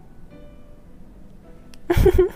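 Soft background music with sustained notes, then a sudden loud thump and a short vocal sound at the very end.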